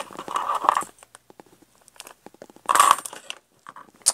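Handling sounds on a craft table: thin metal cutting dies clinking and paper cards rustling as they are shifted about on a cutting mat, in a burst at the start and again about three seconds in, with light clicks between.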